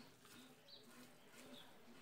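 Near silence: faint room tone with a couple of faint, distant bird calls.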